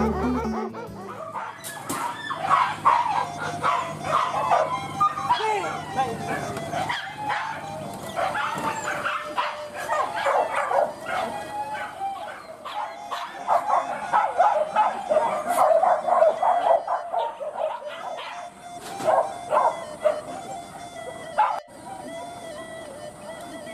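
A pack of boar-hunting dogs barking, many at once and overlapping, in quick irregular barks that carry on throughout.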